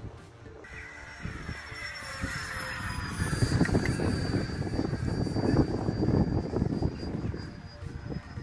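Electric ducted-fan RC jet flying past, its high fan whine sliding slowly down in pitch. It is heard over a gusting rumble of wind on the microphone that is loudest in the middle.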